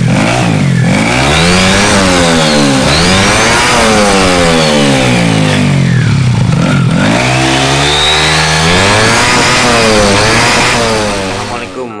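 Automatic scooter's single-cylinder engine revved up and down several times with its CVT cover off, the drive belt and pulleys spinning in the open; the sound fades out near the end.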